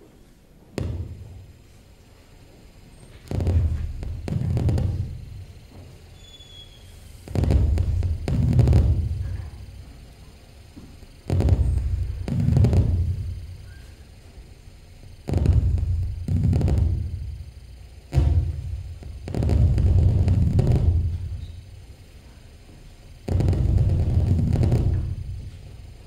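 Low-pitched 8-bit synthesizer notes, played on a bare circuit board, each starting suddenly and fading over a couple of seconds, repeating about every four seconds with quiet gaps between.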